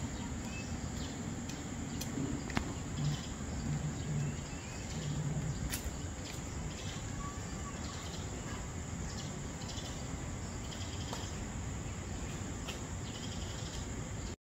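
Steady outdoor background noise: a low rumble with a continuous high-pitched shrill tone running through it, like insects, and a few faint ticks.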